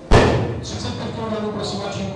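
One loud thump just after the start, from the weightlifting barbell and its plates as loaders strip the collars and small plates off its ends, with a short ring in the hall.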